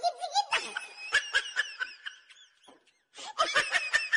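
Laughter in short repeated bursts, breaking off briefly about three seconds in before starting again.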